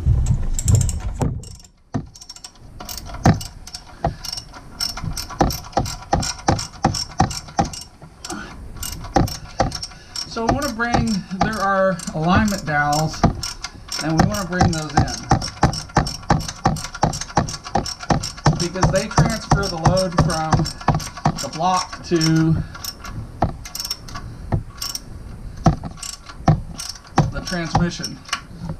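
Hand socket ratchet clicking steadily, about three clicks a second from about two seconds in, as a bell-housing bolt is run in to draw the engine onto the automatic transmission.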